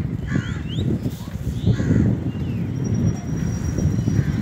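Low, steady rumble of wind and road noise from a vehicle moving along a highway. A few short harsh calls sound over it in the first two seconds.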